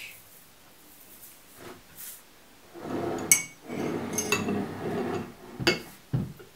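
Metal spoon scraping and clinking in a ceramic bowl of porridge, with a sharp ringing clink about three seconds in and more clinks toward the end.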